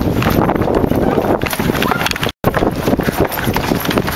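Running footsteps on pavement with the rumble and knocking of a handheld camera jostled by a running person, loud and uneven; the sound cuts out for an instant just past halfway.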